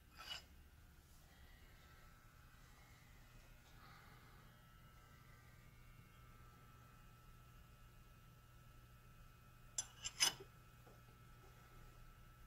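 A faint steady low hum, with a small metallic click just after the start and a quick cluster of three or four sharp metallic clinks about ten seconds in, the loudest sound here: an open-end wrench knocking against the steel hex nut of a milling machine's R8 drawbar.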